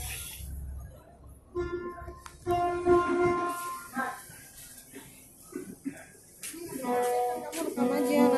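Voices chanting an Islamic devotional song in long held notes, phrase by phrase with short pauses between; a new, louder phrase begins near the end.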